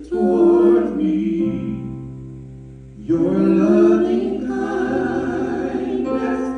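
Praise team singers singing a gospel worship song together. A phrase ends in a held note that fades out, and the next phrase comes in about halfway through.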